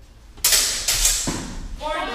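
Steel training swords clashing: a sudden loud blade strike about half a second in, one or two more quick hits, and ringing that dies away in a large hall. A shout follows near the end.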